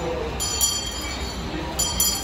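Salvation Army kettle hand bell ringing in short repeated shakes, about half a second in and again near the end, over a steady low hum.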